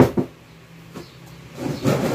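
Handling noise from shoes: two sharp knocks at the start, a faint tap about a second in, then a brief rustle near the end as one pair is set down and the next pair is fetched.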